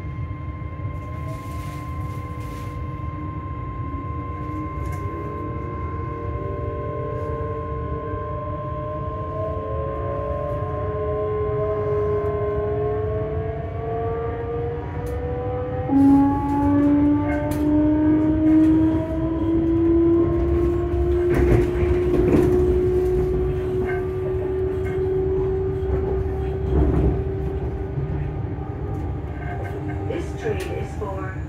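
Electric multiple-unit train heard from inside the carriage by the doors, its traction motors whining in several tones that rise steadily in pitch as it accelerates away from a station, over a steady rumble of wheels on rail. A stronger tone cuts in about halfway and keeps rising, and a few knocks come from the running gear in the second half.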